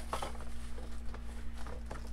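Light rustles and soft clicks of small clear plastic bags being handled, each holding a toy tire, over a steady low hum.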